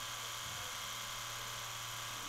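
Pen-style rotary tattoo machine running with a steady whirring buzz as the needle works into the skin of a scalp.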